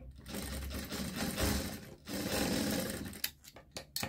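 Industrial sewing machine stitching along folded fabric strips in two runs, with a brief stop about two seconds in. A few sharp clicks follow near the end.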